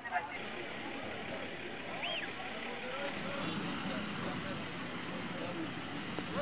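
Street ambience: steady traffic noise with faint voices in the background, and one short high rising-and-falling tone about two seconds in.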